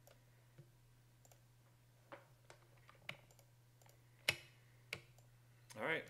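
Scattered computer mouse and keyboard clicks, about six in all, irregularly spaced, the loudest about four seconds in, over a faint steady low hum.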